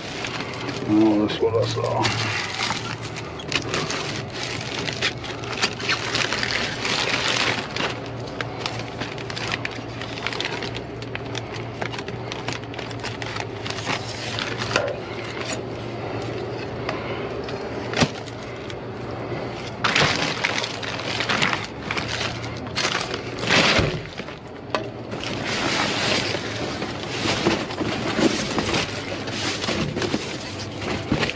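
Rummaging through trash inside a dumpster: plastic bags and wrap crinkling and cardboard shifting under gloved hands and a reacher-grabber tool, with a few sharp knocks. A steady low hum runs underneath.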